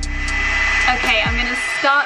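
Wet-to-dry hot-air hair straightener running with a steady rush of air and a thin high whine; its owner finds it loud, like a spacecraft. Background music fades out under it in the first second and a half, and a woman's voice comes in over it near the end.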